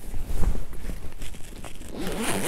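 Rustling and knocking of a synthetic-leather backpack being handled close to the microphone, with the loudest knock about half a second in.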